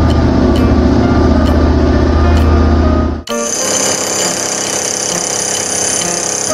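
Cartoon sound effect of an excavator's hydraulic breaker hammering rock: a loud, low, fast rattle over light background music with a steady beat. A little past three seconds in it cuts off sharply, and a higher ringing buzz takes over.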